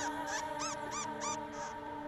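A bird calling in a quick series of short, arched chirps, about three a second, that stop about one and a half seconds in, over a sustained background music chord.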